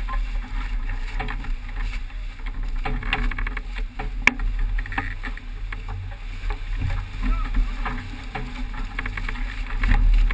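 Water rushing and splashing along the hull of a racing sailboat running fast downwind in strong wind, with wind rumbling on the microphone throughout. A sharp click about four seconds in.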